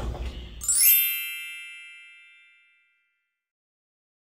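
Bell-like chime sound effect for a slide transition: a quick rising shimmer of bright ringing tones about a second in, which then fade away over about two seconds.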